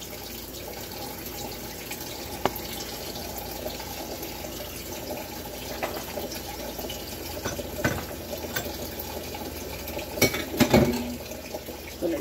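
Kitchen tap running steadily into the sink, with a few short knocks and clatters near the end.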